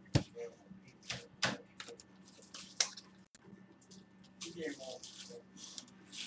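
Computer mouse clicking, a handful of sharp single clicks at irregular spacing.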